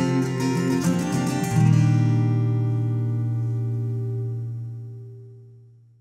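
Acoustic guitar playing the closing bars of a song, then a final strummed chord about a second and a half in that rings on and fades away.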